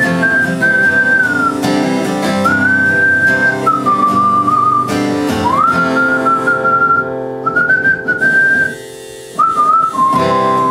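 A man whistling a melody into a vocal microphone over his own acoustic guitar. The whistle comes in held phrases, each starting with an upward slide. Guitar and whistle break off for a moment just before the end, then resume.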